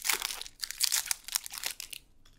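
Magic: The Gathering trading cards being handled and slid against each other, a crinkly rustling in a quick series of short bursts.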